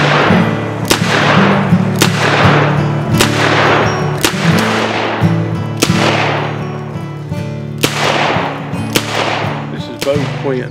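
Smith & Wesson Model 19 revolver firing about seven shots, roughly one a second with a longer pause near the end, each followed by a long fading tail. Background guitar music plays underneath.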